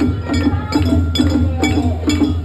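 Japanese festival float music: a small metal hand gong struck in a steady clinking beat, about two and a half strikes a second, over festival drums.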